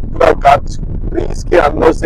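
Steady low rumble of a car driving, heard from inside the cabin, under several short, loud vocal bursts.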